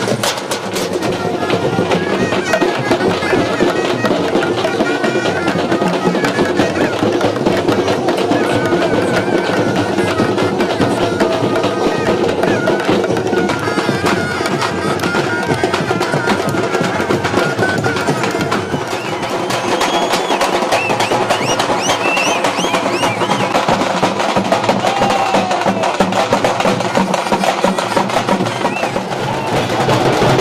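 A troupe of large stick-beaten folk drums playing a fast, driving rhythm together. In the second half a high, wavering piped melody rises over the drumming.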